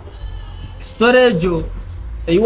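A man's voice: a pause over a low background rumble, then one drawn-out, falling spoken syllable about a second in.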